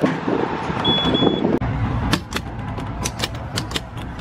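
Busy indoor hall ambience with a short high electronic beep just before a second in. It cuts off abruptly about one and a half seconds in, and a run of sharp, irregular clicks follows.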